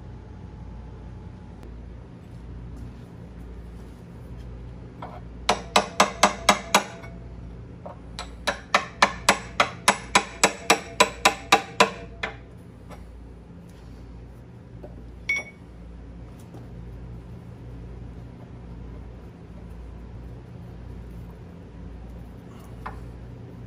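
Sharp metal-on-metal clicks, about four a second, in two runs near the middle (a short one, then a longer one), from hand tools working on the cast-iron magneto-side side cover of a 1923 McCormick-Deering engine. One lone click follows a few seconds later, over a low steady hum.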